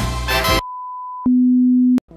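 A short stretch of intro music ends, then a steady high test tone sounds, followed by a louder, lower steady test tone that cuts off suddenly: bars-and-tone style test signals.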